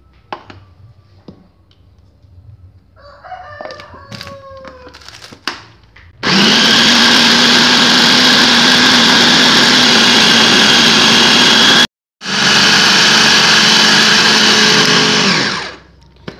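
Small electric food chopper running at full speed, grinding raw beef, spices and egg into a smooth paste: a loud, steady motor whine starts about six seconds in, cuts out for an instant near the middle and winds down just before the end.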